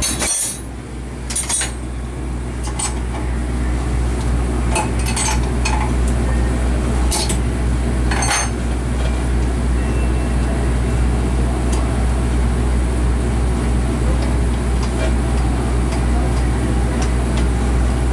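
A steady low machine hum runs throughout. Over the first several seconds there are scattered sharp metallic clicks and clinks as a spark plug is handled and fitted into a metal test fixture.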